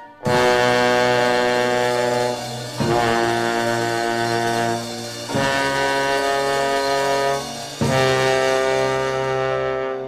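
Four long, loud held notes from a bass trombone with the band, each lasting about two and a half seconds with short breaks between.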